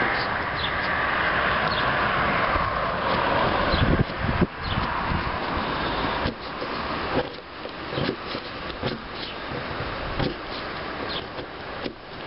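A Cherusker Anduranz knife shaves curls off a wooden stick to make a feather stick, the blade already dull. Short cutting strokes come roughly once a second in the second half. A steady rushing noise fills the first half and fades about six seconds in.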